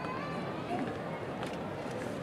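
Outdoor street ambience: a steady hum of the town with faint, distant voices and a few sharp clicks, such as footsteps, in the second half.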